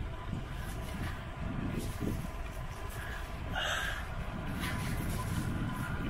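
Wind buffeting the microphone of a camera on a moving bicycle, a low uneven rumble mixed with tyre noise on pavement. A short higher sound comes about three and a half seconds in.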